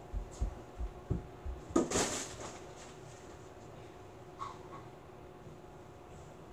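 Quick running footsteps on a carpeted floor, about six footfalls, then a heavier thud and a rush of noise about two seconds in as a child lands a front handspring attempt.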